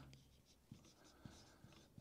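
Faint scratching of a marker pen writing on a whiteboard, in a few short strokes.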